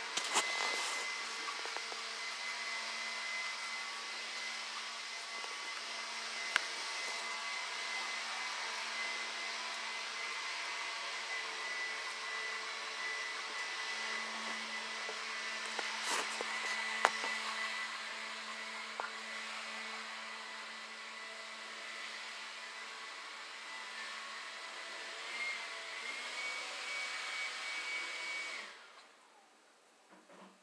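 Steady whirring of a small motor with a faint high hum, broken by a few sharp knocks. It cuts off suddenly about a second before the end.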